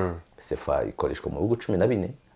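A man speaking in conversation, in a low voice with short pauses between phrases.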